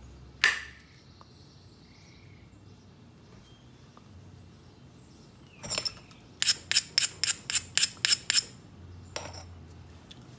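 Stone knapping by pressure flaking: a copper-tipped flaker on the stone's edge gives a sharp click about half a second in as a flake pops off. Later comes a scraping click, then a run of about eight quick ringing ticks of stone on stone or tool, about four a second, and one more click near the end.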